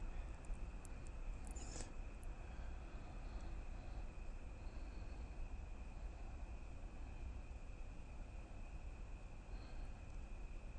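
Quiet room tone: a steady low hum with a faint steady high whine, and a few soft clicks near two seconds in.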